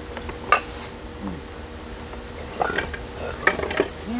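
Ceramic flowerpots clinking and knocking as they are handled: one sharp clink about half a second in, then a few lighter taps near the end.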